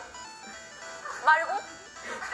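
Light, jingly variety-show background music with steady held notes, and a woman's high voice speaking briefly a little over a second in.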